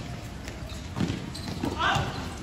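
A basketball bouncing and players' sneakers on a court floor during a scrimmage: a run of irregular low knocks, with a short shout near the end.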